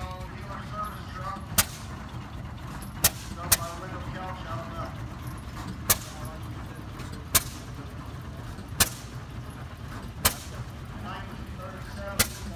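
A low engine rumble with sharp, loud bangs, most of them evenly spaced about a second and a half apart, one extra bang in between.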